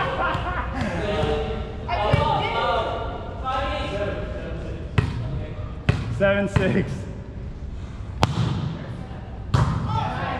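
A volleyball being struck by hands and hitting the hard gym floor: a handful of sharp smacks, spread over the second half, ringing in a large gymnasium. Players' voices are heard over the first few seconds.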